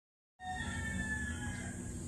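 Outdoor ambience cutting in suddenly after silence: a steady high insect drone over a low rumble, with a few faint whistle-like tones that fall slightly in pitch near the start.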